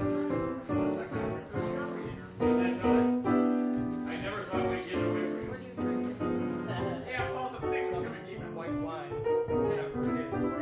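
Piano playing a song in chords and melody, with fresh note attacks roughly every half second.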